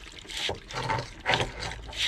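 Water splashing and trickling in irregular spurts from a disconnected water hose being reconnected.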